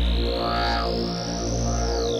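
Opening of a 148 BPM dark psytrance track: a synth sweep rising steadily in pitch turns to fall near the end, over a low sustained synth bass.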